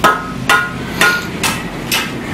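A series of sharp knocks, about two a second, five in all, each with a short ringing tone, like steady hammering.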